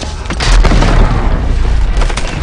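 Film explosion: a deep boom hits about half a second in and is followed by a heavy low rumble, with music underneath.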